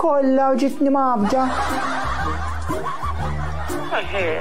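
Laughter and chuckling over background music with a low bass line, which comes in about a second in.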